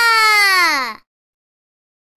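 A young girl's voice holding one long drawn-out note that slides slowly down in pitch and stops about a second in.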